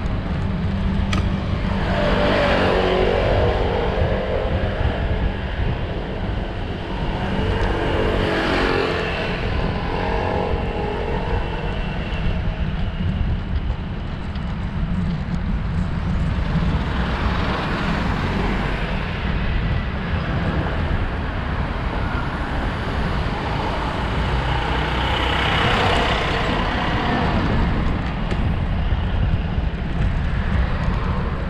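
Steady wind rumble on the microphone while cycling, with motor vehicles passing about four times, each one swelling and then fading, some with a falling engine pitch.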